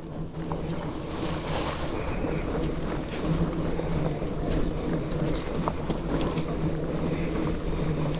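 Mountain bike rolling along a trail covered in dry leaves: tyres crunching through the leaves with small clicks and rattles, under wind noise on the microphone and a steady low hum.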